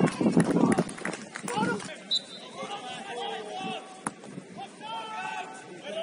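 Men's shouts and calls on a football pitch during play, loudest in the first two seconds, with a few sharp knocks among them. The sound changes abruptly about two seconds in, after which the shouting is fainter and more distant, with one more sharp knock about four seconds in.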